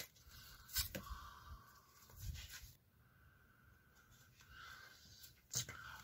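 Faint handling of a tarot deck: soft paper friction of cards with a few light clicks and a low thump about two seconds in, over quiet room tone.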